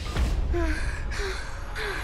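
A woman breathing in short, breathy gasps, about three breaths, over music with a deep bass.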